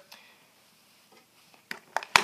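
Mostly quiet room tone, then two short clicks near the end as a hand takes hold of a small hard plastic waterproof box.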